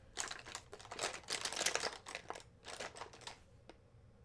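Makeup brushes and cosmetics being rummaged through by hand: irregular clicking, light clattering and rustling, busiest in the first couple of seconds, with a single sharp click near the end.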